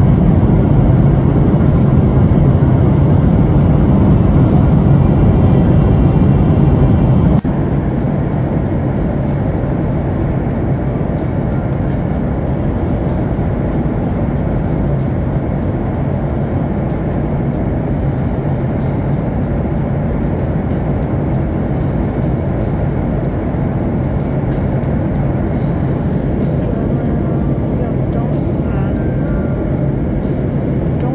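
Airliner cabin noise in flight: a steady low hum of engines and rushing air, dropping a little in level about seven seconds in.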